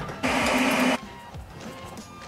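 A short mechanical whirr from a small electric motor, under a second long, followed by quieter background music.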